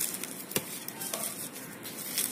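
Fingers crushing fried chillies and rubbing them against a china plate, a dry scratchy crackle, with one sharp click on the plate about half a second in.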